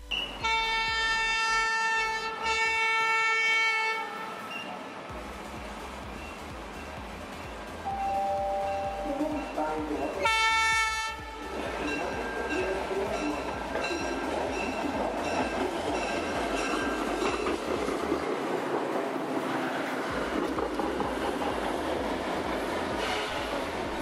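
Budd RDC rail diesel car sounding its horn, one long blast of about three and a half seconds and a shorter one about ten seconds in, then the steady rumble and wheel clatter of the railcar running along the track.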